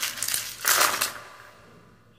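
A handful of plastic magnetic alphabet letters tipped out of cupped hands onto a hard surface, clattering. The clatter is loudest about a second in, then dies away.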